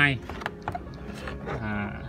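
Light clicks and rustles of plastic-and-card blister packs being handled, between bits of a man's speech, which ends just after the start and resumes with a drawn-out voiced sound near the end.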